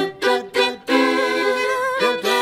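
Two fiddles playing a duet: a few short, separated bow strokes in the first second, then longer held notes with vibrato.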